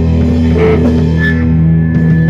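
Live rock band playing loud: electric guitars and drums over sustained low notes, with a long high note held from just over a second in.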